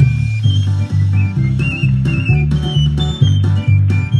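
Basque pipe-and-string-drum music: a txirula, a three-hole pipe, plays a quick high melody of short notes over the ttun-ttun string drum, its struck strings giving a steady beat on two alternating low notes.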